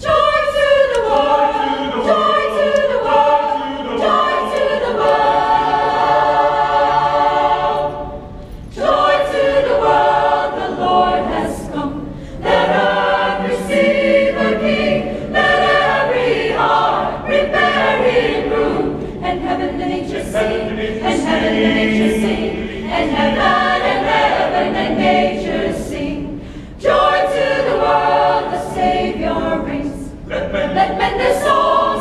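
Choir singing a Christmas anthem in several parts, coming in loudly at the start and breaking off briefly between phrases three times, about 8 seconds, 12 seconds and 27 seconds in.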